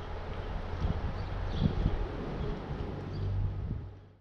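Outdoor wind buffeting the microphone: uneven low rumbling gusts over a steady hiss, with a few faint high chirps, fading out at the end.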